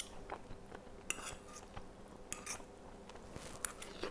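Faint chewing of a mouthful of braised oxtail, with a few light clicks of a fork against a plate.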